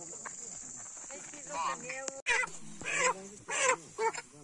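Chickens squawking repeatedly as they are lifted out of a crate by hand, with loud calls about every half second starting about halfway through. Before that there is a steady high hiss with faint voices.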